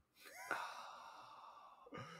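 A person sighs: a short voiced rise, then a breathy exhale that fades away over about a second and a half.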